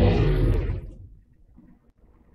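The fading rumble after a golf shot into an indoor simulator's hitting screen, dying away within about the first second and leaving quiet room tone.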